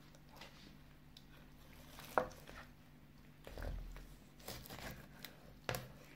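Faint sounds of a kitchen knife being set behind the head of a whole sea bream on a plastic cutting board and cutting in. There is a sharp click about two seconds in, a soft low thud near the middle, and a few fainter ticks after it.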